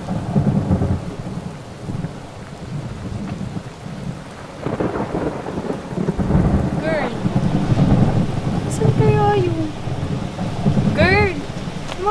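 Steady rain with a low, uneven rumble of thunder. A few short pitched sounds that rise and fall come through in the second half.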